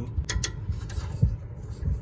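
A few light clicks, then two low knocks, as a hand and wrench are worked onto the ignition coil bolts of a small engine.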